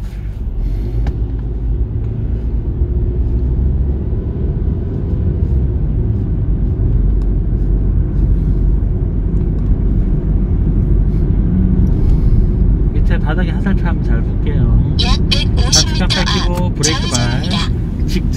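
Hyundai car's engine and road noise heard from inside the cabin as the car pulls away from a stop and gathers speed: a steady low rumble that grows louder over the first few seconds and then holds. Voices come in from about two-thirds of the way through.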